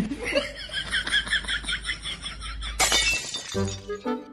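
An edited-in sound effect: a fast run of repeated high chimes or tinkles over a low hum. A sharp hit comes near three seconds, and background music starts just after it.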